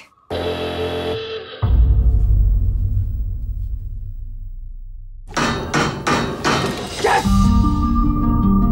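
Trailer sound design: a brief sustained tone gives way to a deep, low boom that slowly fades. A rapid run of sharp knocks follows, about three a second, and plucked-string music begins near the end.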